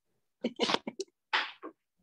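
A person's startled, breathy vocal outburst heard through the video-call audio: a handful of short bursts of breath and voice over about a second, not words.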